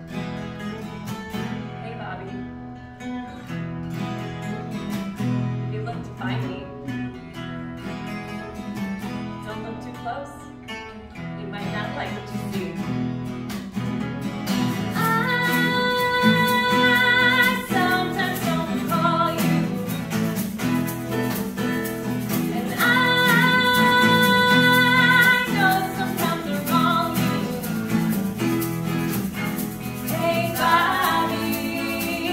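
Two acoustic guitars strumming and picking a song's opening, joined about halfway through by a woman singing the lead, holding long notes with vibrato.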